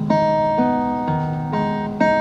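Acoustic guitar played solo: a chord struck just after the start and left ringing, the low notes changing a couple of times as it slowly fades.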